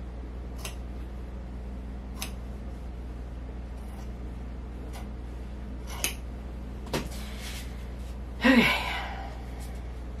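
Scissors snipping through a football jersey's fabric: several separate sharp snips spaced roughly a second apart. Near the end comes one brief louder sound with a falling pitch.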